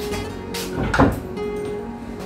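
A wooden door being handled at its latch, with one sharp clunk about a second in, over background guitar music.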